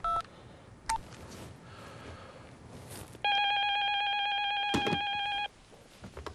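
Two short mobile-phone keypad beeps as a number is dialled, then a landline telephone's electronic ring: one steady ring of about two seconds that cuts off suddenly.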